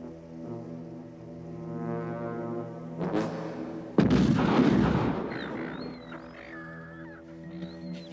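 A single loud shotgun blast about four seconds in, its noise trailing off over a second or so, over a sustained low brass chord from the film score. A shorter burst of noise comes about a second before the blast.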